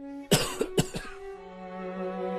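A person coughs twice, loudly, about half a second apart. The coughs are dubbed in over a string quartet holding slow, sustained notes.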